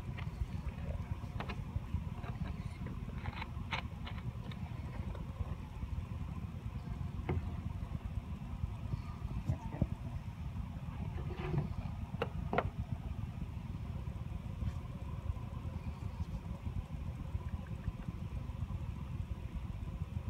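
Wind rumbling steadily on a phone microphone, with scattered faint clicks and rustles as baking soda is spooned through a plastic funnel into a balloon.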